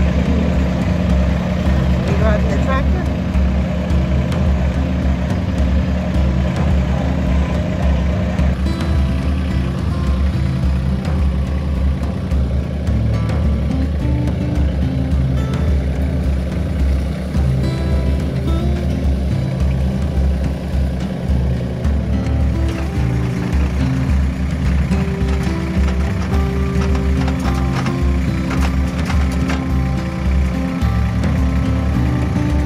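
Compact front-loader tractor engine running steadily, heard from the driver's seat, with soft background music over it.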